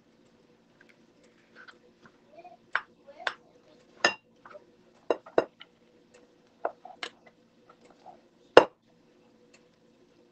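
A plastic rice paddle knocking and scraping against a nonstick rice-cooker pot and a ceramic casserole dish as cooked rice is scooped and tapped off: about eight irregular sharp taps, the loudest near the end, over a faint steady hum.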